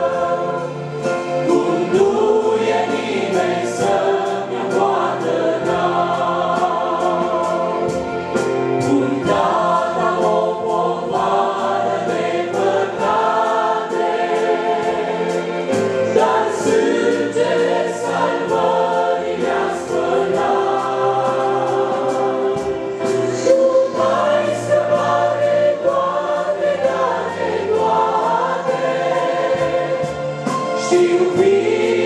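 A church congregation of men, women and children singing a hymn together in Romanian. They are accompanied by a digital piano whose low notes are held steadily beneath the voices.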